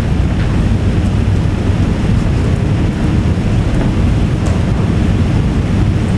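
Steady low rumble with hiss: constant room or recording background noise, with no distinct event.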